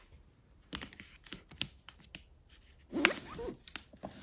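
Books being handled on a shelf: light clicks and scrapes as books are tipped and slid, with a louder spell of scraping and rustling about three seconds in.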